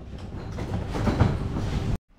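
Outdoor background ambience: a steady low rumbling noise that grows louder through the shot and cuts off abruptly at the end.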